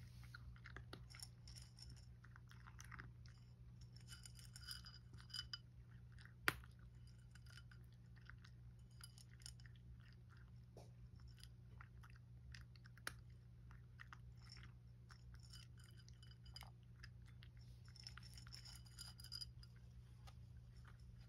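A domestic cat crunching dry kibble, faint bouts of crackly chewing coming in clusters, with a single sharp click about six and a half seconds in. A steady low hum lies underneath.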